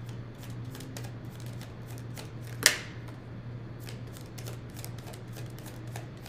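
Tarot deck being shuffled by hand: a steady run of soft, quick card clicks, with one louder click about two and a half seconds in.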